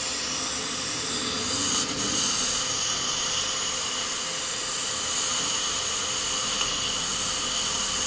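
Dental treatment-room equipment running steadily: a continuous hiss with a high whine in it, growing slightly stronger about two seconds in.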